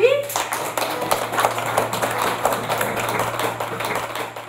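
A classroom of children clapping their hands in a round of applause, which starts just after a short spoken call to clap.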